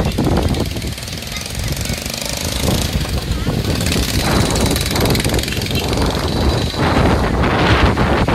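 Strong storm wind buffeting the phone's microphone in loud, uneven gusts, with a heavy low rumble throughout.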